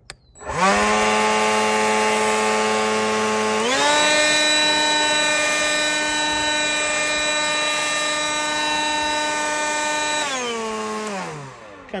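WORX 20V cordless electric leaf blower running: its motor and fan spin up to a steady whine with a rush of air. About four seconds in the pitch steps up as it goes from the low setting to the more powerful one. It then switches off and spins down near the end.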